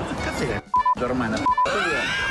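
Two short censor bleeps, each a single steady tone in a brief cut of the soundtrack, about two-thirds of a second apart, over background music and talk.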